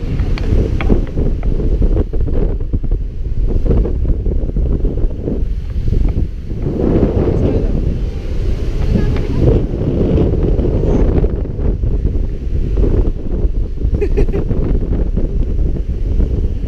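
Wind buffeting the camera microphone, a loud, continuous low rumble, over the wash of surf breaking on the shore.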